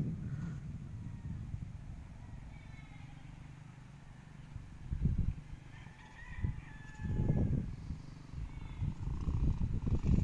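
A rooster crowing faintly, twice: once a few seconds in and again near the end, over a low rumble of wind on the microphone that swells a couple of times.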